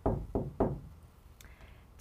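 Three quick knocks of knuckles on the studio's chart display board, about a third of a second apart, followed by a faint click.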